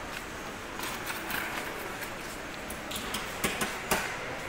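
Supermarket indoor ambience: a steady hum of store background noise, with a few sharp clicks and knocks, loudest in the last second.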